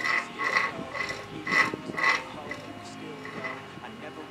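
Background music with a steady beat: bright, ringing, clink-like strikes about two a second for the first two seconds, then the music carries on without them.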